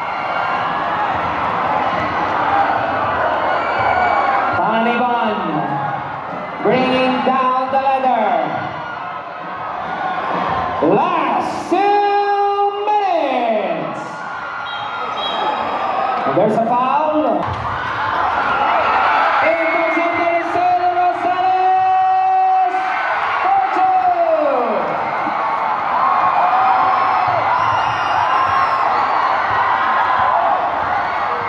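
Large crowd in a packed gym cheering and shouting throughout, with several long whooping calls that rise in pitch, hold and then fall, the longest lasting about five seconds in the second half.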